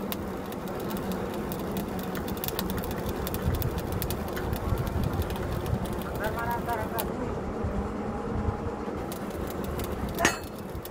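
Truck-mounted borewell drilling rig's engine running steadily, with rapid metallic clicking that stops suddenly about seven seconds in. A brief shout is heard about six seconds in.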